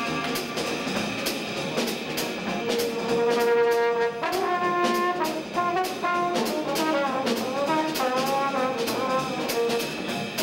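Live small-group jazz: a trombone takes the lead, holding a long note about three seconds in and then playing a phrase with slides between the notes, over a steady cymbal beat.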